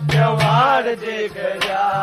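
Haryanvi ragni folk singing: a male voice sings a bending melodic line, accompanied by sharp hand-drum strokes and a steady held low note.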